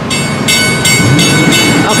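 Drawbridge warning bell ringing loudly in quick, even strokes, about three a second, over a steady high tone. It signals that the traffic gates are down for a bridge opening.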